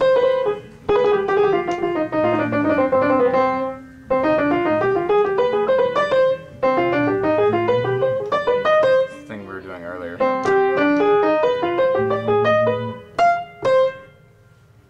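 Piano: the right hand plays quick runs of scale patterns over low chords held in the left hand. It comes in phrases with short pauses about four, six and a half, and nine and a half seconds in, and stops just before the end.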